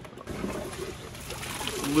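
Half-cut toilet being flushed: water runs and splashes into the bowl, a steady noise starting a moment in. The bowl is clogged, so the water backs up rather than draining.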